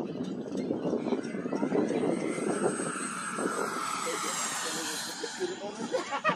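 Electric ducted-fan jet model (a Freewing Yak-130 with a 70 mm EDF) flying by, its fan whine sliding gently down in pitch as it passes, with faint voices underneath.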